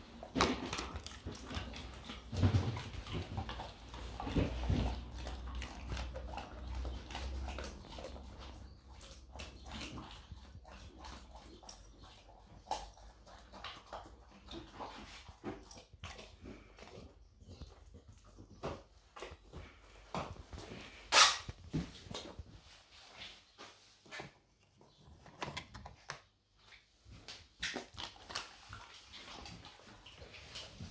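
A Vizsla taking and chewing a dried meat treat: a run of scattered short clicks and crunches. One sharp click about two-thirds through is the loudest.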